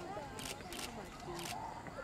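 Camera shutters clicking three times at uneven intervals, over faint voices of people nearby.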